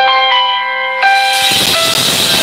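Phone ringtone playing a melody of steady electronic notes, signalling an incoming call. About a second and a half in, a hiss joins it.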